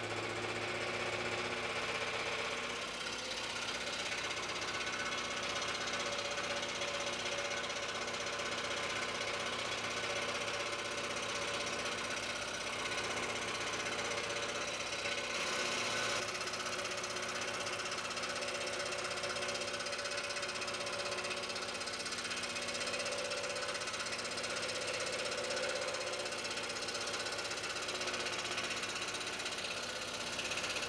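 Scroll saw running steadily as its reciprocating blade cuts through a thick block of hard plum wood. There is a brief break in the sound about fifteen seconds in.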